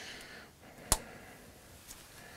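A single sharp click about a second in as a compound bow is handled, such as an arrow nock snapping onto the string, over a faint steady hiss.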